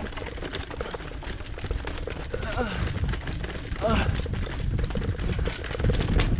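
Mountain bike clattering down a rocky trail at speed: a rapid, uneven run of knocks and rattles from the bike over the rocks, over a low rumble of wind on the microphone.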